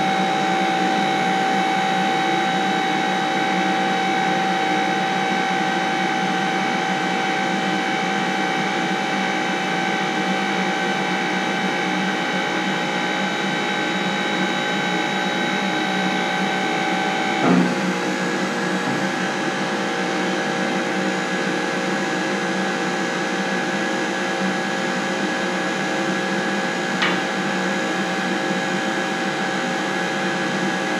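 Powered tube bender running with a steady motor hum and whine as it bends a steel tube to 93 degrees. About 17 seconds in the whine stops with a short clunk, leaving a lower steady hum, and a single click comes near the end.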